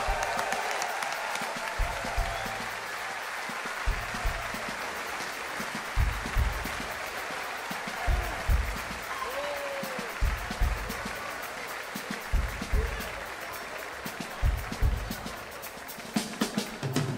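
Concert audience applauding. Underneath, the band keeps a low, thumping beat about every two seconds.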